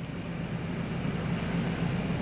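Steady low machine hum with an even hiss and no change.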